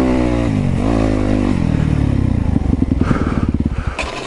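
Yamaha YZ250FX dirt bike's four-stroke single-cylinder engine running with a brief rev about a second in. It then drops to a slow idle with separately audible firing beats, and stops near the end.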